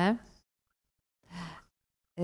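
A speaker's voice trailing off at the end of a word, then a pause of silence broken once by a short breathy sound, like a sigh, before speech resumes.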